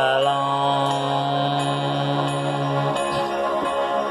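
Instrumental backing track of a slow power ballad: sustained keyboard chords held steady, changing chord about three seconds in. A man's sung note trails off right at the start.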